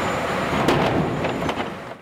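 Sawmill log infeed machinery running: a steady mechanical din from the chain conveyor carrying logs, with a couple of light knocks, fading near the end.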